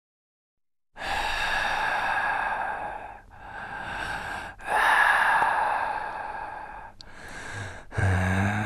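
Heavy, drawn-out breathing, four long breaths with short breaks between them, starting about a second in after silence.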